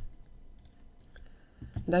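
A few separate clicks of a wireless computer mouse's buttons as objects are selected on screen. A woman's voice starts near the end.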